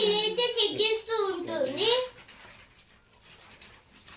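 A child's high-pitched voice speaking for about two seconds, then a quiet pause.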